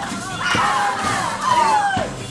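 A crowd calling out in long, falling cries over a percussion band's song, with the audience clapping along.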